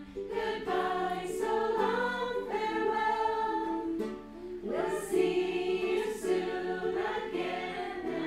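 A group of adult voices singing a slow song together, accompanied by a strummed ukulele, with a brief pause about halfway before the singing resumes.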